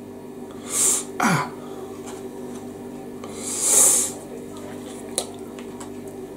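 Two breathy hisses from a person's nose or mouth, a short one about a second in and a longer one near the middle, with a brief falling hum from the voice between them. A steady low hum runs underneath.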